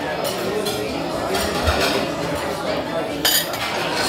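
Cutlery clinking against a dish as salad is scooped up, with a sharper clink near the end, over the murmur of a busy dining room.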